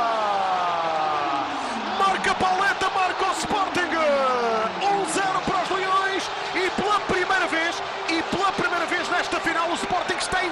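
Indoor arena crowd cheering and shouting to celebrate a goal, many voices at once, with long falling cries in the first couple of seconds and scattered sharp hits throughout.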